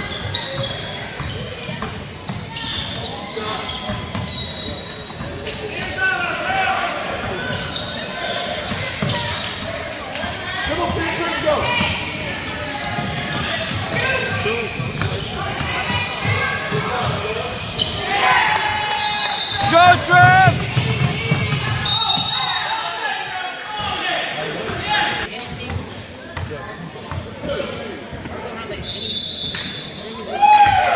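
Basketball dribbled on a hardwood gym court, its bounces echoing in a large hall, with shouts and chatter from players and spectators over it.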